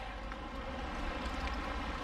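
Swollen river in spate rushing past concrete steps: a steady rush of water with a low rumble underneath.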